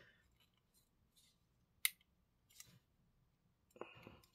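Faint scraping with a few small clicks and one sharp click a little under two seconds in: an M.2 SSD being forced into a tight external enclosure. Its thermal pad is too thick to slide in cleanly and is catching and tearing.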